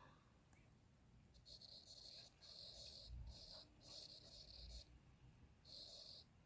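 Faint scratchy writing sounds as an S Pen draws strokes on a Samsung Galaxy Tab S7+ in the Samsung Notes app: four short strokes in a row, then one more near the end.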